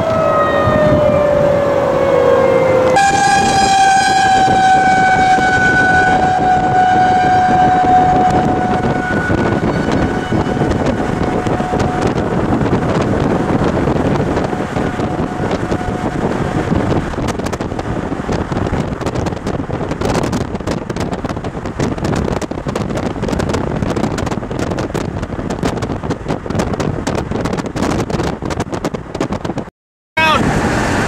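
Outdoor tornado warning siren wailing, its pitch sliding slowly downward and fading away by about halfway through. Steady wind and road noise from a moving vehicle runs underneath and continues after the siren dies out.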